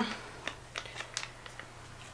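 A few faint, scattered small clicks from handling the sticky black peel-off clay mask as it is applied.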